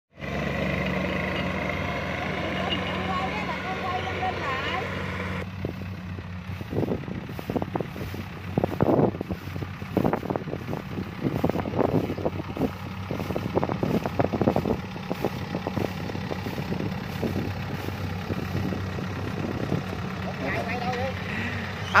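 Kubota DC-70 combine harvester's diesel engine running steadily under harvesting load, with irregular knocks and rustles for several seconds in the middle.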